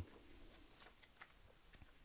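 Near silence, with a few faint crinkles of paper as a sheet is folded down into a water bomb base.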